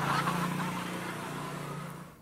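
Motorcycle engine passing by, a steady low drone that slowly fades away.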